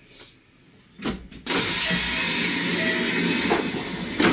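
A Kintetsu electric train standing at a platform vents compressed air from its pneumatic system. A thump comes about a second in, then a loud, steady hiss that lasts about two seconds and stops abruptly.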